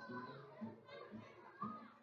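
A crowd of young children chattering and talking over one another.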